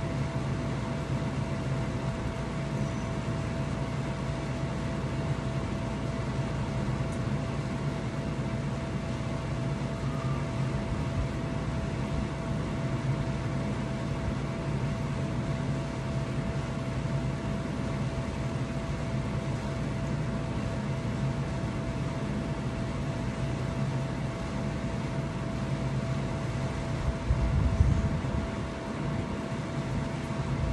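Steady mechanical hum of an ice bath's chiller unit running, with a thin constant whine above it. A brief low rumble rises near the end.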